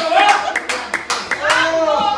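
Hands clapping, an uneven run of sharp claps about three a second, under a loud voice calling out.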